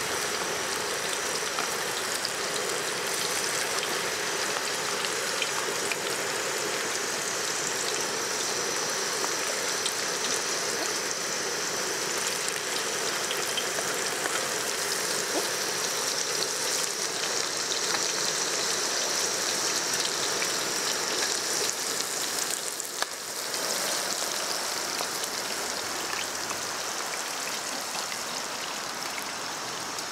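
Food frying in hot oil in a pan on a portable gas stove: a steady sizzle with small crackles throughout, dipping briefly about 23 seconds in.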